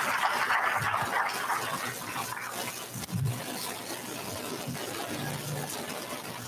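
Audience applauding in a large hall, dying away about two seconds in and leaving a low hubbub of people moving and talking.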